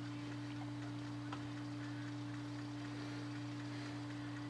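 A steady low electrical hum over faint hiss, with a couple of tiny faint ticks.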